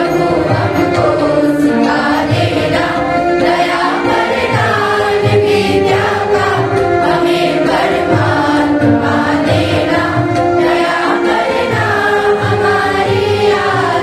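A choir of school students, boys and girls, singing together into microphones in long held notes.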